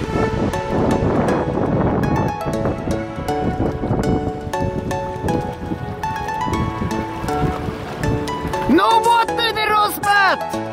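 Background music with held melody notes and a steady beat; near the end a voice with sliding pitch, a sung or shouted line, comes in over it.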